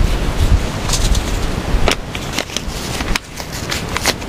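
Wind rumbling on the microphone, with a few sharp crackles of paper seed packets being handled and set down.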